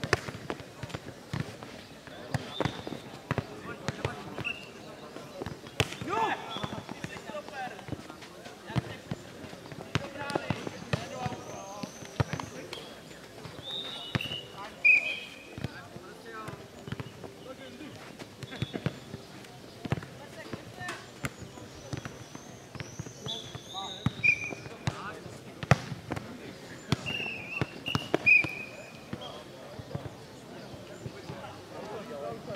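A futnet ball being kicked back and forth and bouncing on a clay court, a string of irregular thuds with a few louder hits about halfway through and near the end.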